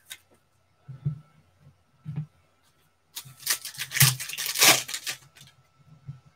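Foil wrapper of a trading-card pack being torn open: a couple of soft handling rustles, then about two seconds of ripping and crinkling.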